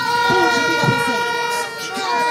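A loud, steady horn-like tone played over the sound system, holding one pitch and dropping out briefly near the end, with a voice shouting over it.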